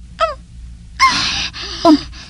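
A voice actor's sharp, breathy gasp about a second in, with a short falling vocal sound before it and a brief 'um' after it.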